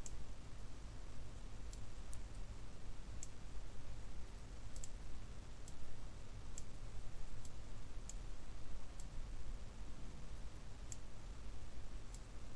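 Computer mouse clicks, about a dozen short, sharp ones at uneven intervals, over a steady low hum.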